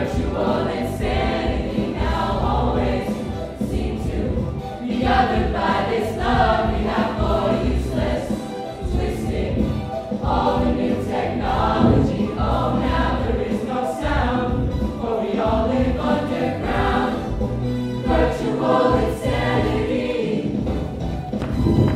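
Mixed-voice show choir singing in parts, the voices amplified through headset microphones.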